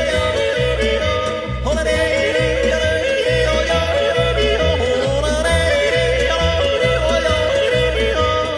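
Background music: yodeling in a Tyrolean folk song, a solo voice making sharp leaps in pitch over a steady bass beat.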